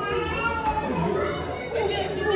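Overlapping chatter of several adults and children talking and playing at once, with children's higher voices among the adults'.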